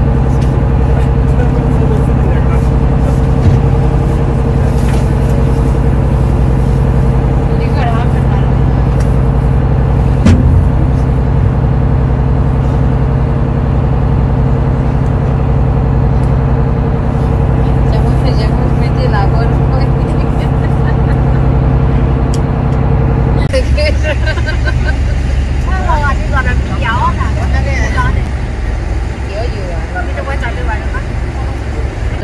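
A tour boat's engine running steadily with a low hum. Near the end it gives way suddenly to many people chattering.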